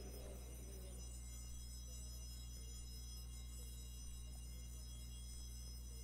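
Steady low electrical hum with a faint, high-pitched whine from the microphone and sound system, with no voice in the room. A faint trailing sound dies away in the first second.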